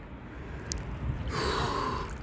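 A person's breathy gasp, starting a little past halfway, over a low steady rumble: the sharp breathing of a cold-water dip.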